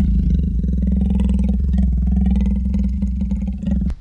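A loud, low, steady rumble with a fast pulsing rattle to it. It starts suddenly and stops just before the end.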